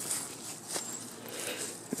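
A few soft footsteps crunching on dry fallen leaves and grass, over a faint steady hiss.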